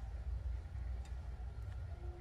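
Low, unsteady rumble of wind on the microphone, with a faint click about halfway through.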